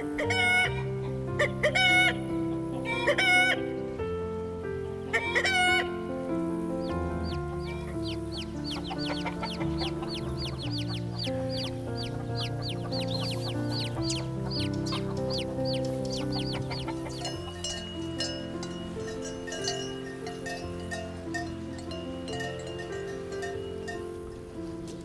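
A rooster calling several times in short bursts, followed by the rapid, high cheeping of chicks lasting about ten seconds, over background music of sustained low notes.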